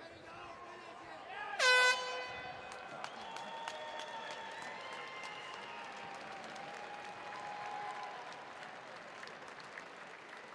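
An air horn sounds one short, loud blast about one and a half seconds in, signalling the end of the round. The arena crowd then cheers and shouts.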